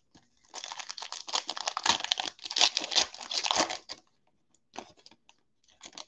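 Wrapper of a Panini football trading-card pack being torn open and crinkled by hand, a dense crackle lasting about three and a half seconds. A few faint ticks follow near the end.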